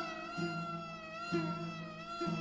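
Uzbek-Tajik Shashmaqom instrumental music: a bowed fiddle holds a high note that slides down a little at the start and then wavers, over low plucked string notes entering about once a second.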